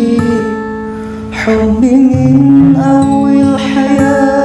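Acoustic sholawat, an Islamic devotional song: a woman's voice singing over acoustic guitar. The sound dips briefly about a second in, then swells back fuller.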